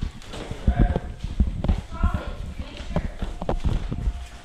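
Irregular thumps and knocks of footsteps and of a handheld camera jostled while being carried at a walk, with a couple of brief bits of voice in between.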